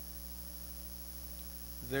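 Steady electrical mains hum, with a man's voice starting to speak again near the end.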